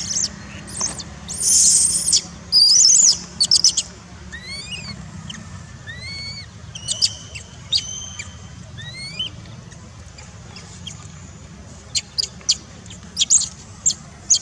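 Baby macaque screaming in distress: loud, high-pitched squealing cries in the first few seconds, then quieter rising calls, and short sharp squeaks again near the end.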